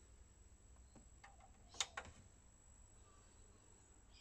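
Faint button clicks on the front panel of a Supra SV T21DK VHS video cassette recorder: a couple of small ticks, then a sharper click near the middle and another a moment after it, as the machine is switched on.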